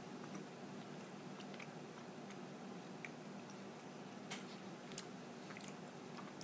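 A person chewing a jelly bean with the mouth closed: faint, scattered mouth clicks over a low steady hum.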